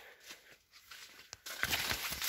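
Maize leaves rustling and crackling as someone pushes through the rows, starting about one and a half seconds in after a short quiet moment.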